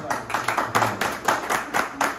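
A small group of people clapping by hand: a brief round of applause of many quick, uneven claps.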